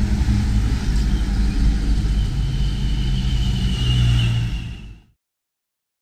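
A motor vehicle passing on the road close by, its engine running with a low rumble and a faint whine that grows stronger near the end. The sound cuts off abruptly about five seconds in.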